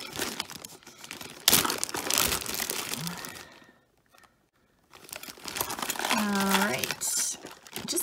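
Clear plastic zip-top bag crinkling as hands rummage through it and lift small boxes out, with a sharp crackle about a second and a half in. The crinkling stops for about a second midway, then starts again.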